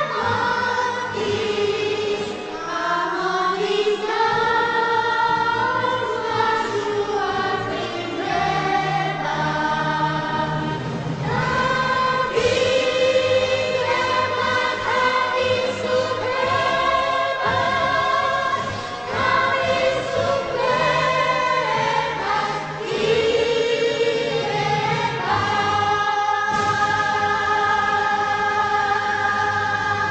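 A choir singing slow, sustained chords in several parts, moving to a new chord every few seconds.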